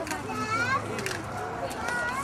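A group of toddlers chattering and calling out in high voices.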